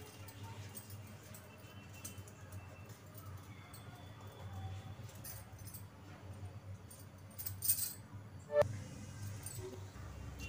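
A faint steady low hum, then near the end a few clinks and a short rattle as cumin seeds and bay leaves are tipped into the mustard oil in the kadhai.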